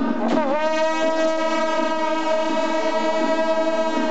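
A ceremonial wind instrument sounding one long, loud held note. The note begins about a third of a second in, bends down briefly, then holds steady in pitch.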